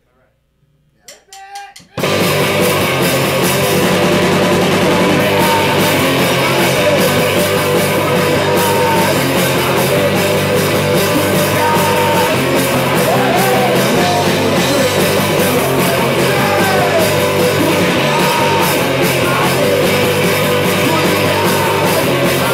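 A live rock band with electric guitars, bass and drums starts a song abruptly about two seconds in, after a near-quiet pause, and plays loudly through amplifiers; a man's voice sings into the microphone in the second half.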